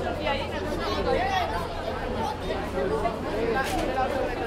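Crowd of bystanders talking over one another in an unbroken babble, with a steady low hum underneath.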